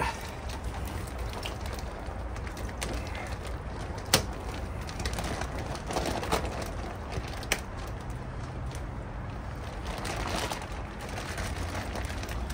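Plastic fish bag being worked in pond water to release a koi: water sloshing and plastic crinkling over a steady background hiss, with two sharp clicks, about four seconds in and again about seven and a half seconds in.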